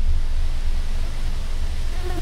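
Wind blowing steadily: a broad rushing hiss over a heavy, uneven low rumble.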